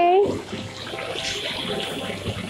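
Marinated chicken pieces sizzling on a hot flat griddle, a steady hiss.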